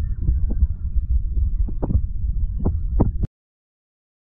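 Loud, muffled low rumble of pub noise picked up on a phone microphone, with a few short knocks, cutting off suddenly a little over three seconds in.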